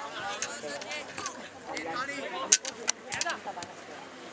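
Voices of football players and spectators calling and shouting across the pitch, several overlapping, with a few sharp knocks a little past halfway.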